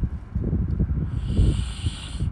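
A person's breath noise close to a phone microphone: irregular low rumbling puffs, with a hissing breath from a little past one second in until near the end.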